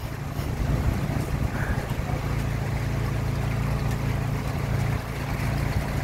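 Storm wind rushing steadily through birch and other trees, with a steady low hum underneath.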